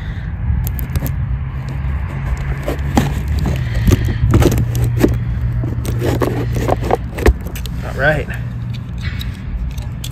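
Knife blade slicing the packing tape along the seam of a cardboard box, a run of short scrapes and clicks, over a steady low hum.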